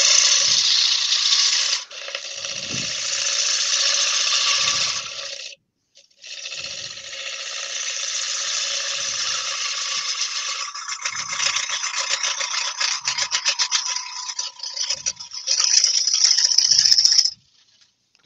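A turning tool cutting a wooden bowl as it spins on a lathe: a steady hiss of shavings coming off. The hiss breaks off for half a second about five and a half seconds in, turns into a rapid scratchy chatter for a few seconds, then comes back as one last steady cut that stops shortly before the end.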